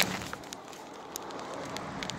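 Phone handling noise: small clicks and rubs of fingers on the phone over a faint outdoor background hiss.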